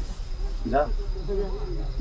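Crickets chirping in the background: high, evenly repeating pulses that run steadily under a short spoken word.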